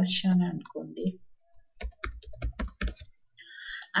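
Typing on a computer keyboard: a quick run of keystrokes lasting about a second, near the middle.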